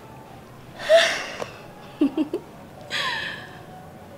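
A woman's loud breathy exhalations, like sighs or gasps: one about a second in and another about three seconds in, with a few short voiced sounds between them.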